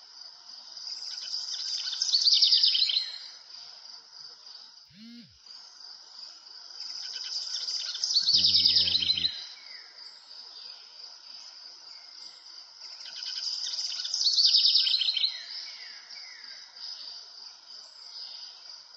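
Chirping birds and insects over a steady high trill, swelling three times, about six seconds apart, into a loud burst of rapid chirps followed by a few falling whistled notes.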